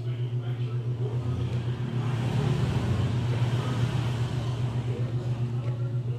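A road vehicle passing by, its noise swelling about a second in and fading by about four and a half seconds, over a steady low hum with a regular pulse.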